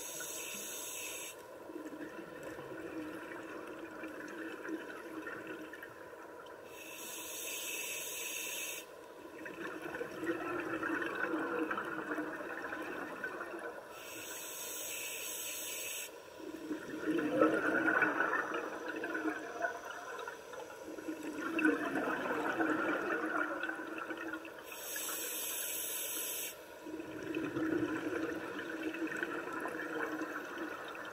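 Scuba regulator breathing underwater: four inhalations, each a sharp hiss of about two seconds, each followed by a longer, louder rush of bubbling exhaled air.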